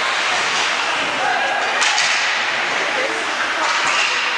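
Ice hockey game heard from the rink side: a steady wash of arena noise with scattered voices of players and spectators, and one sharp knock about two seconds in, typical of a stick or puck striking.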